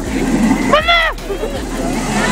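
A person's short, high-pitched cry about a second in, falling in pitch, over a steady noisy din.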